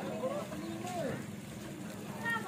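Several people's voices chattering and calling out over steady background noise.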